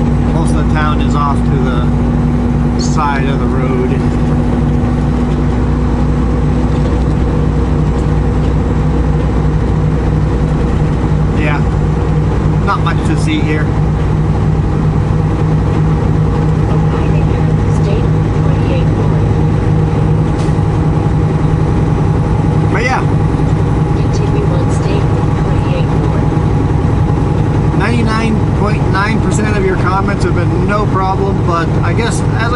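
Steady engine and road noise heard inside the cabin of a moving vehicle, a constant low hum that holds even throughout.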